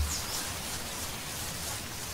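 Steady, even background noise of outdoor ambience, with no distinct events.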